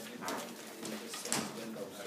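Faint, indistinct chatter of several people talking in an office room, no words clear.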